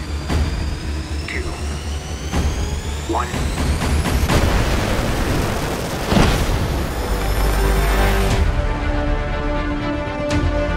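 Fighter jet engine spooling up with a slowly rising whine, building to a loud rush of noise about six seconds in. It then gives way to a deep drone and sustained tones of trailer music.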